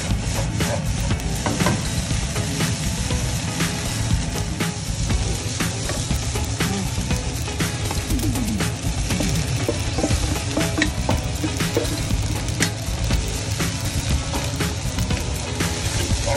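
Egg fried rice sizzling in a hot nonstick wok while a wooden spatula stirs and scrapes it, with frequent short clicks of the spatula on the pan. About halfway through, shrimp and chopped scallions are tipped in from a bowl and stirred into the rice.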